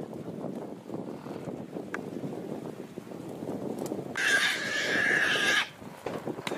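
A wild boar squealing once: a single harsh scream about four seconds in, lasting about a second and a half and cutting off sharply, over low background noise.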